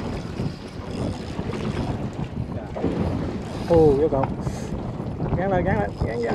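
Wind noise on the microphone over water sloshing around a small boat, with a person's drawn-out wavering call a little past the middle and again near the end.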